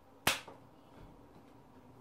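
A single sharp snap made with the hands, about a quarter second in, with a short room echo after it; otherwise faint room tone.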